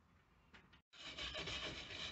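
Old weed hatch seal being scraped off a steel narrowboat weed hatch lid with a hand scraper: near silence, then from about a second in a continuous rough scraping of metal tool over steel and sealant residue.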